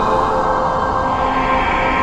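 Algorithmic electroacoustic music synthesised in SuperCollider: a dense, steady drone of several held tones over a continuous noisy bed.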